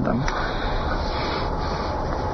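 Steady background hiss with a low hum during a pause in a man's speech; the tail of his word is heard right at the start.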